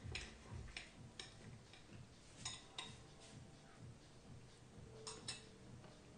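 Knife and fork clicking faintly against a plate while a piece of meat is cut: a few separate sharp clicks, with two close together near the end as the cutlery is set down.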